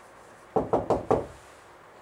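Four quick knocks of a marker against a whiteboard, packed into about half a second.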